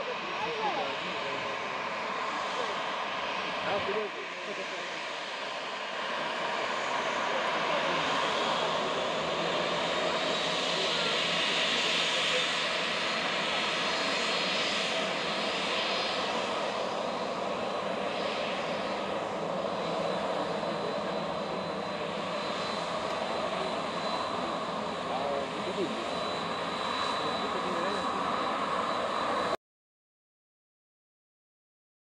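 Jet engines of a Ryanair Boeing 737 taxiing close by, a steady rushing noise with a thin high whine that grows louder about six seconds in. The sound cuts off suddenly just before the end.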